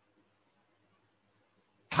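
Near silence: a pause in speech with only faint room tone, and a man's voice starting right at the end.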